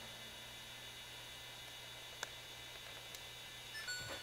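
Quiet room tone: a steady low electrical hum under faint hiss, with a single faint click about two seconds in.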